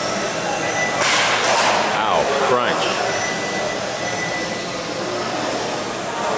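Electric 1/12-scale RC race cars whining around a carpet track in a large echoing hall, with a burst of hiss about a second in and then a falling whine around two seconds in as a car slows.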